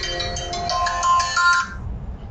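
A phone ringtone: a short electronic melody of steady notes that cuts off suddenly near the end, just before the call is answered.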